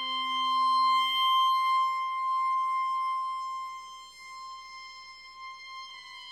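Contemporary chamber music: one high note held steadily throughout, with a lower note beneath it that fades away within the first two seconds. The music grows quieter about four seconds in.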